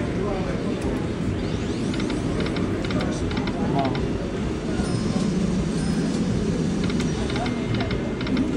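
Dragon Cash video slot machine's electronic chimes and jingles during play, over a steady casino-floor din of voices and machines. There is a rising sweep about two seconds in.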